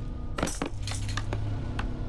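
Hand percussion struck unevenly as a group starts a beat: a handful of scattered, sharp, clinking strikes over a low steady hum.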